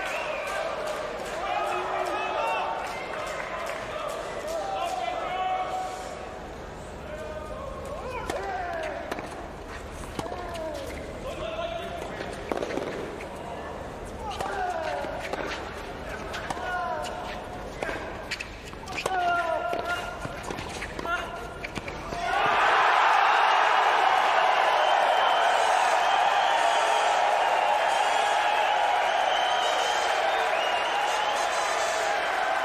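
Tennis ball struck and bouncing in a rally, heard as sharp pops over crowd voices and calls. About 22 seconds in, the point ends and the crowd breaks into loud, steady applause and cheering that lasts to the end.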